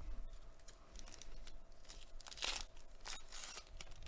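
Foil wrapper of a 2021 Panini Mosaic baseball card pack being torn open and crinkled by hand. It is a run of rustles and rips, the loudest tear about two and a half seconds in and another just after three seconds.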